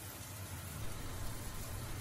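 Soft, steady hiss of diced chicken simmering in its sauce in a frying pan on an induction hob.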